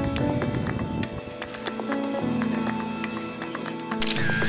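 Background music with a steady beat: held, sustained notes that change pitch every second or so over regular light percussive ticks.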